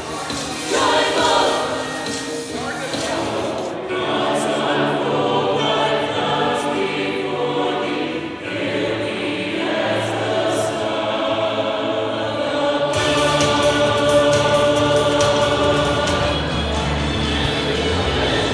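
A large mixed choir singing a piece in harmony, holding long sustained chords, growing fuller from about 13 seconds in.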